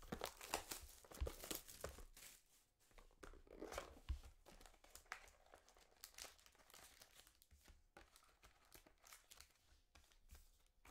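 Faint tearing and crinkling as a sealed cardboard trading-card box is torn open by hand and its foil packs are handled, busiest in the first two seconds, then sparser rustling.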